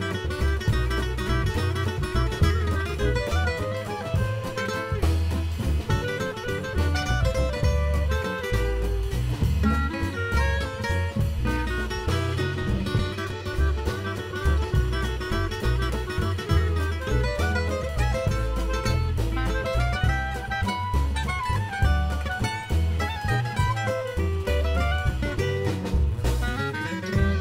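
Gypsy jazz band playing an instrumental tune: clarinet, two acoustic guitars, upright bass and drum kit, with a steady bass pulse under a moving melody.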